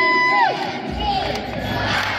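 Large arena crowd cheering and shouting. A long, steady high tone held over the crowd slides down in pitch and stops about half a second in.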